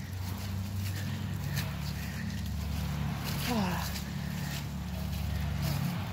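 A stroller being pushed across wet grass with footsteps, over a steady low hum. A short falling voice-like sound comes about three and a half seconds in.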